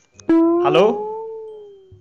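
A comedic sound effect: one long pitched call that starts abruptly, bends slightly up and then down, and fades out over about a second and a half. A man's 'hello' is spoken over its start.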